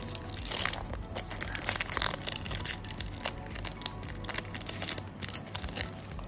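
Foil trading-card pack wrapper crinkling and tearing as a Panini Select basketball card pack is opened by hand, with irregular crackles throughout.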